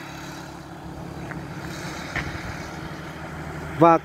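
Motorbike engine running as it rides past on the road, a steady low hum.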